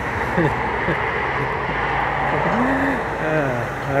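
Street background noise with a steady hiss of traffic, broken by a few brief laughs and murmurs of a voice.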